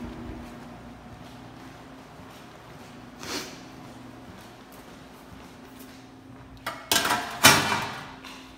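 A low steady hum, with a soft swish about three seconds in and two loud scraping sounds close together near the end.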